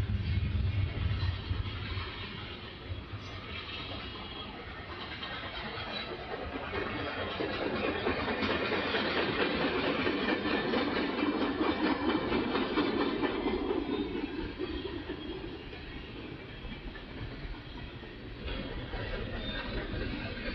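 Freight train rolling past: the steel wheels of covered hoppers and tank cars running on the rails in a steady, continuous noise. A low rumble sits under the start, and the sound swells to its loudest through the middle before easing off.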